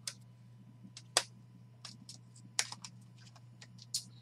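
Rigid plastic card holders clicking and tapping against each other as they are handled and stacked: a few sparse, irregular clacks, the loudest a little over a second in, over a steady low electrical hum.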